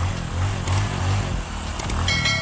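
Motorcycle engine sound effect: a steady low rumble under a loud rush of noise.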